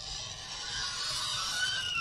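Chalk scratching on a blackboard as a child writes her name, with a thin high squeak of the chalk in the last half second.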